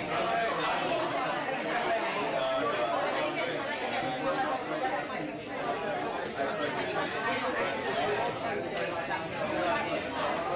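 Classroom chatter: many students talking over one another at once in small discussion groups around tables, a steady hubbub with no single voice standing out.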